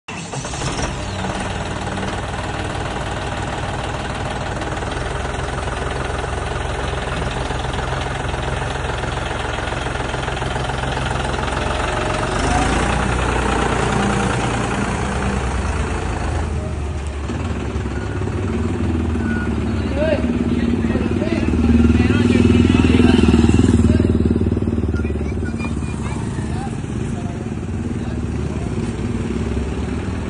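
John Deere tractor's diesel engine running steadily. Partway through the sound changes abruptly, and it swells louder for a couple of seconds near two-thirds of the way in.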